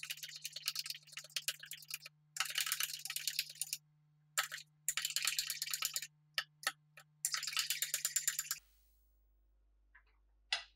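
A spoon stirring briskly in a ceramic mug: rapid clinking against the inside of the mug, many strokes a second, in four spells with short pauses. It stops a little over eight seconds in.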